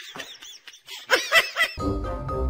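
Kittens mewing in a quick run of short, high-pitched squeaky calls, loudest about a second in. Music starts near the end.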